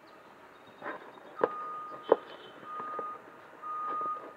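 A truck's reversing alarm beeping in a single steady high tone, on and off about once a second, starting about a second and a half in. Sharp clicks and knocks of a cardboard box being handled sound over it, the loudest about two seconds in.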